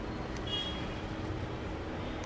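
Steady street traffic noise, a continuous low rumble of passing vehicles, with a brief faint high tone about half a second in.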